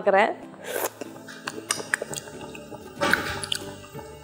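Faint background music, with a short wet slurp as tea is tasted from a spoon.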